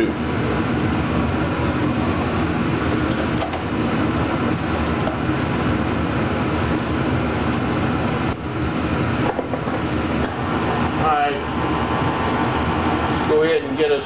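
Steady whooshing hum of a kitchen exhaust fan running throughout, with a spoon stirring thick vegetables in a steel pot.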